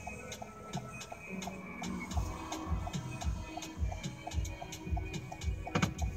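Pop music playing on the car radio, with a steady bass beat coming in about two seconds in. Throughout, a light, even ticking runs at about two to three clicks a second, separate from the music's beat.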